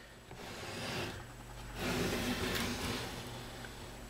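Soft rubbing and sliding noise as the clock's wooden enclosure is handled and turned around on the desk, in two faint swells.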